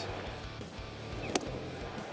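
Ballpark music with guitar playing over the stadium sound, with one sharp click a little past halfway.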